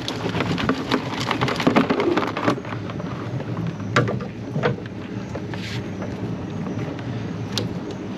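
Mud crabs being tipped out of a wet collapsible crab pot into a plastic tub: a dense pattering clatter of shells, claws and netting for the first couple of seconds, then a few separate clicks and knocks.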